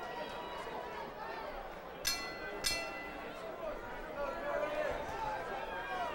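Boxing ring bell struck twice, about half a second apart, signalling the start of round two, over crowd chatter and shouting.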